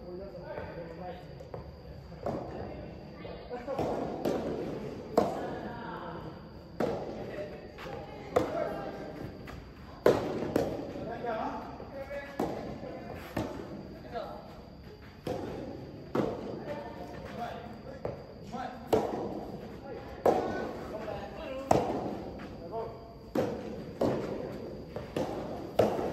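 Soft tennis rally: the soft rubber ball struck by rackets and bouncing on the court, a sharp hit every second or so, echoing in a large indoor hall, with players' voices between shots.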